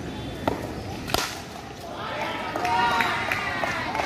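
A light tap, then a sharp crack of a cricket bat striking a tennis ball a little over a second in, followed by players shouting and calling.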